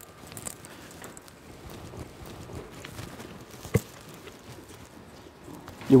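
Faint rustling and scattered light clicks of SCBA face pieces and their mesh head harnesses being pulled on, with one sharper click nearly four seconds in.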